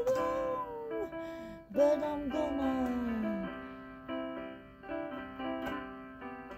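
A woman singing a slow, gliding melody over sustained electronic keyboard chords. Her last phrase slides downward and stops about halfway through, leaving the keyboard chords alone, fading and struck again.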